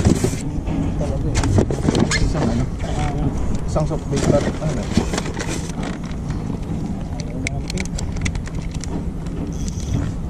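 A boat motor running with a steady low hum, with people talking in the background and scattered light clicks.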